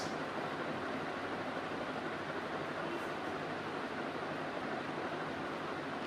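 Steady background hiss of room noise with no distinct events, apart from one faint tick about halfway through.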